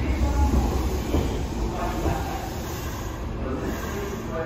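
Station platform ambience: a steady low rumble from electric trains standing at the platforms.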